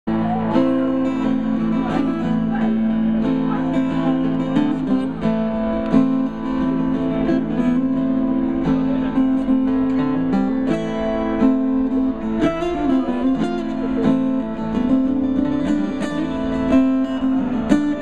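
Acoustic guitars playing a steady picked and strummed intro through a live PA.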